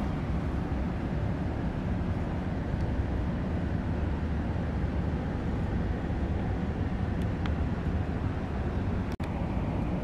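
Steady low rumbling background noise with no distinct events, broken by a brief dropout about nine seconds in.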